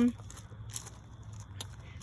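A few faint footsteps crunching on loose gravel, over a low steady hum.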